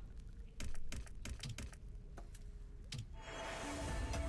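Pragmatic Play Aztec Powernudge video slot sound effects: a quick, irregular run of clicks as the reels spin and stop, then a bright shimmering effect from about three seconds in as the symbols settle.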